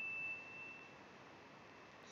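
A faint, steady high-pitched tone over low hiss that stops about half a second in, leaving near silence.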